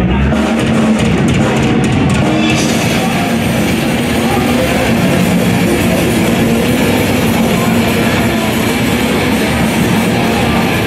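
A metal band playing live and loud: drum kit and electric guitars, getting fuller in the high end about two and a half seconds in.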